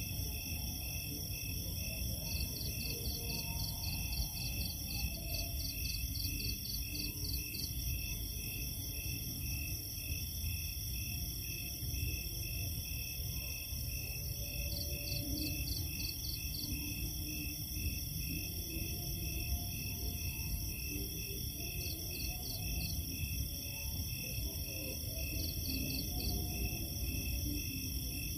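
A chorus of night insects calls steadily with an even pulsing. A higher-pitched insect joins in several times with quick runs of chirps, about four a second. Under them runs a steady low hiss.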